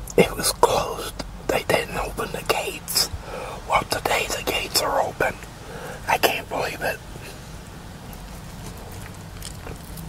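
Close-miked biting and chewing of a grilled chicken sandwich: irregular wet mouth clicks and bites that stop about seven seconds in.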